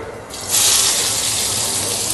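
Sliced onions dropped into hot oil in a pan, sizzling: a loud, steady hiss starts suddenly about half a second in.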